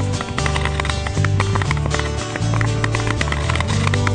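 Background music: a song with a steady bass line and a regular clicking percussion beat.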